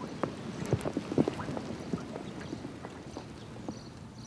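Rain falling on wet pavement and puddles: many irregular drip and splash ticks over a steady hiss, thickest at the start and thinning out toward the end.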